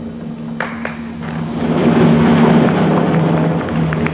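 Theatre audience applauding, a dense wash of clapping that swells in the middle and eases toward the end.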